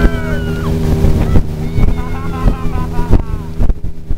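Motorboat engine running steadily at speed while towing a water skier, with wind buffeting the microphone.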